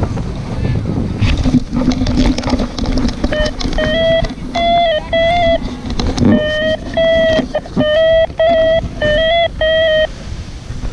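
A paragliding variometer beeping: a run of electronic beeps, each about half a second long, whose pitch steps slightly up and down from beep to beep, starting about three seconds in. Before the beeps start there is rushing wind on the microphone with scattered knocks.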